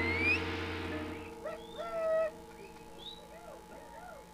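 A gamelan gong ringing out and fading, its low hum stopping suddenly just over a second in. Faint wavering, sliding high tones follow in the lull before the ensemble strikes up again.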